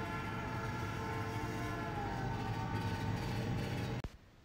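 Cartoon train sound effect: a steady rolling rumble with held horn-like tones over it, one sagging slightly in pitch midway, cutting off abruptly at the end.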